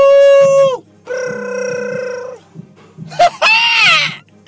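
A man's voice wailing three long wordless notes: the first held steady, the second a little lower and wavering, the third louder, bending up and back down. A quiet low backing beat runs underneath.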